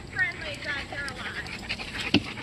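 A dog whining: a string of short, high whines that each slide down in pitch.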